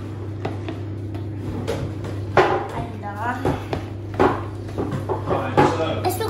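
Metal spoon clicking and scraping against a plastic tub as flour-and-water glue is stirred, in short irregular strokes.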